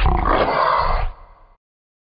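A single loud roar, about a second long, that dies away by about a second and a half in.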